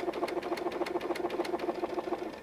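Brother DreamWeaver XE computerized sewing machine running, stitching out a decorative stitch pattern: a steady motor hum with a rapid, even needle clicking.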